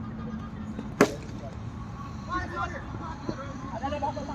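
A cricket bat strikes the ball once, a single sharp crack about a second in, followed by faint voices of players calling out.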